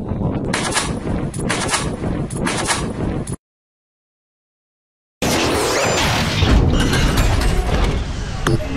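RPG-7 rocket launcher firing: a loud rushing outdoor noise that drops out to dead silence for about two seconds, then a sudden loud blast with a long rushing noise after it.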